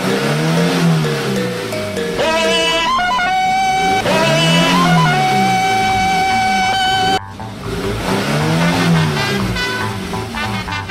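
Music mixed with racing-car sound effects: an engine revving up and down about every four seconds, with some tyre squeal.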